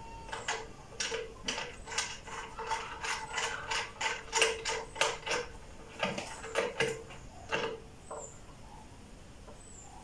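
Wooden connecting arm of a tensegrity table being turned by hand on its screw into the table top, giving a run of short clicks and creaks about two to three a second that stop about eight seconds in.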